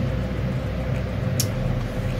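Steady low background hum and rumble, with one short click about one and a half seconds in.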